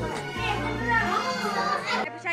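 Several voices, children's among them, chattering and calling out at once over background music with steady low bass notes.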